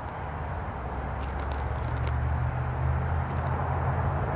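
Low, steady engine hum of a motor vehicle, growing a little louder over the first couple of seconds and then holding.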